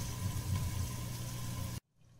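Cubed potatoes frying in oil in a kadai under a glass lid: a steady, muffled sizzle over a low hum, cutting off abruptly near the end.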